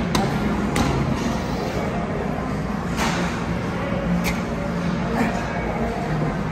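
Gym room noise with indistinct background voices and a low hum, broken by a few short, sharp clicks and clanks of gym equipment, the loudest near the start and about three seconds in.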